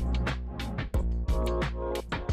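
Background music with a sustained deep bass and sharp drum hits.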